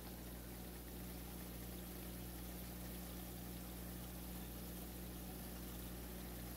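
Grated carrots in sunflower and grapeseed oil simmering in a pan, a faint steady bubbling over a low hum. The bubbling marks the oil as nearly done.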